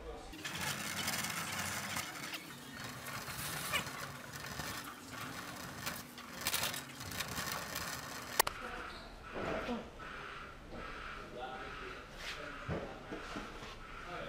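A steady rattling clatter for about the first eight seconds, ending in a sharp click, then quieter indistinct voices.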